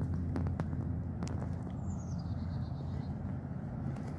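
Outdoor background: a steady low rumble with a few light clicks, and a short descending bird call about two seconds in.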